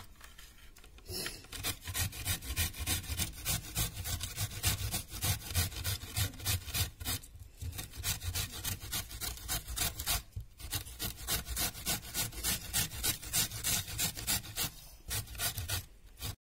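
Cauliflower being grated on a flat metal hand grater: quick, rhythmic rasping strokes, about three a second. They start about a second in and are broken by two short pauses.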